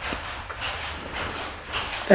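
Steady low background rumble and hiss, with no single event standing out.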